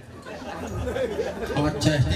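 Speech only: people talking into a microphone, with chatter.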